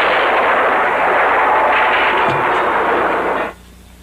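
Cartoon downpour sound effect: a loud, steady rushing hiss of heavy rain that cuts off suddenly about three and a half seconds in.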